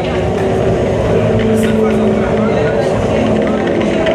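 Heavy metal band playing live: loud distorted guitars holding sustained notes over a dense wash of amplified noise.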